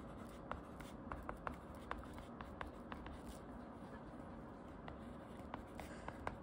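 Plastic tip of an Apple Pencil-style stylus writing on a tablet's glass screen: a faint, irregular run of small taps and clicks as letters are formed, over a low steady hiss.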